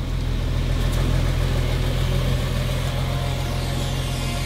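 Engine of an old flatbed truck running steadily as the truck drives off, a low, even hum.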